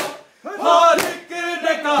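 A group of men chanting a noha together in loud, strained voices. Each second brings a sharp slap of hands striking bare chests in unison (matam): at the start, about a second in, and at the end.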